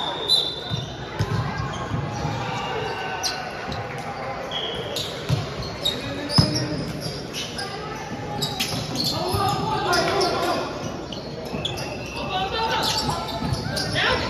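Volleyball rally in a reverberant sports hall: the ball struck with sharp hits at irregular moments, the loudest about six seconds in, among players' shouts.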